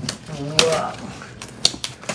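Gift wrapping paper rustling and tearing as a cardboard box is unwrapped, with a few sharp clicks and taps from handling the box.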